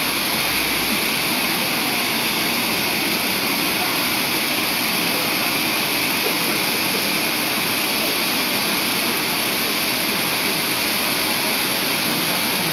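Several ground fountain fireworks burning at once: a steady, even hiss that does not let up.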